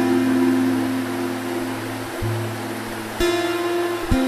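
Slow acoustic guitar chill-out music, notes plucked and left to ring, with new notes about two and three seconds in, over the steady rush of flowing river water.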